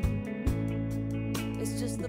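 A multitrack song mix playing back from a recording session: held chords over a steady bass note, with a couple of drum hits, between two sung phrases.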